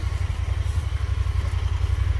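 An engine idling steadily close by, a low, even pulsing.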